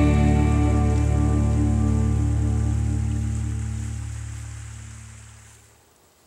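Outro music: a single held chord rings out and slowly fades, dying away just before the end.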